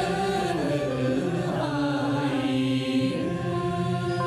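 Quan họ Bắc Ninh folk singing with stage accompaniment. The voices hold long notes, sliding down in pitch early on, sustaining one long note through the middle, then rising again near the end.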